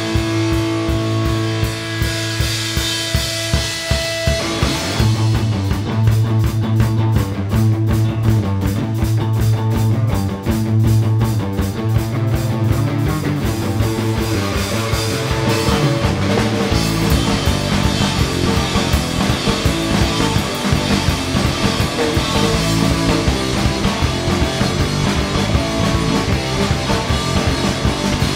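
Alternative rock band playing an instrumental passage on electric guitar, bass guitar and drum kit, without vocals. It opens on a held chord for about four seconds, then the drums and bass come in with a steady driving beat, and the band plays fuller and heavier from a little past halfway.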